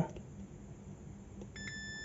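Digital multimeter's continuity buzzer sounding a steady high beep that starts about one and a half seconds in and holds: the probes on the keypad contact and the board track are connected.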